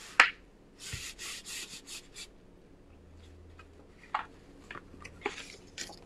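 Hands rubbing a sheet of paper pressed onto an inked foam stamp: a quick run of about six brushing strokes about a second in, then a few faint ticks and clicks of paper being handled.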